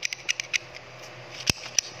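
Light plastic clicks from a 3D-printed PLA+ rotary pellet magazine being worked by hand as its orange pellets are pushed out: a quick run of small ticks at the start and one sharper click about a second and a half in.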